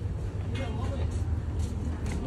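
Indistinct voices of people in a street, not clear enough to make out words, over a steady low rumble.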